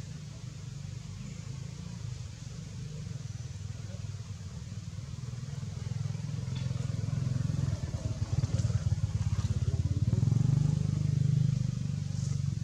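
A low-pitched engine running steadily, growing louder over the second half.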